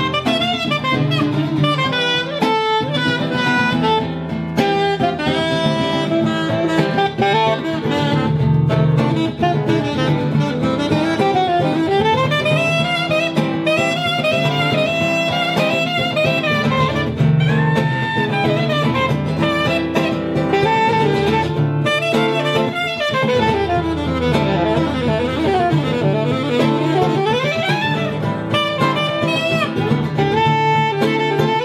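Saxophone solo, with quick melodic runs climbing and falling, over the band's steady backing.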